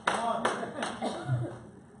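Scattered handclaps with a few voices calling out from the congregation, irregular and fainter than the preaching around them.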